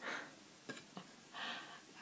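Soft handling noise: two short rustles with a couple of light clicks between them, from a hand moving over the cat's fur and clothing and reaching for the camera.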